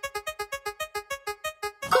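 Spinning prize-wheel sound effect: one electronic, keyboard-like note ticking over and over, slowing from about eight ticks a second to about three as the wheel comes to rest, and stopping just before the end.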